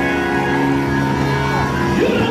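Live gospel worship music: a keyboard holding sustained chords at a steady level.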